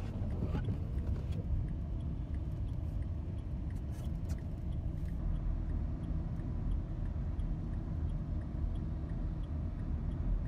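Car driving on a snow-covered road, heard from inside the cabin: a steady low rumble of engine and tyres, with a faint regular ticking about twice a second.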